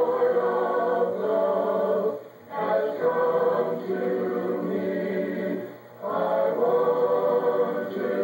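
Youth chorus of boys' and girls' voices singing a cappella, in three sung phrases with two brief pauses between them.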